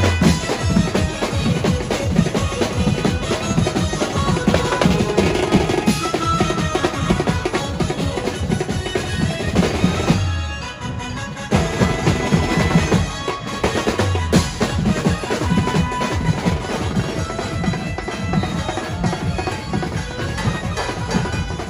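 Mumbai banjo-party band playing a Hindi film song: a group of drummers beating snare-type and large bass drums and a cymbal with sticks under a melody line. About ten seconds in the drums break off for about a second, then come back in.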